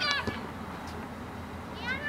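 High-pitched shouted calls from young players or spectators: one brief call right at the start and another rising call near the end, over a steady outdoor background.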